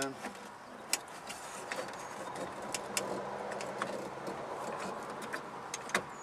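Scattered sharp clicks and light knocks from a truck's plastic interior door handle and its metal linkage rod being worked into place inside the door. A steady low hum runs underneath.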